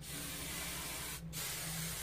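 Aerosol spray can hissing onto hair in two bursts: one of about a second, a short break, then a second, shorter spray.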